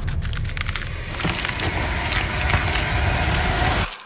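Horror-trailer sound design: a loud low rumble with dense, rapid crackling, which cuts off abruptly near the end into a moment of silence.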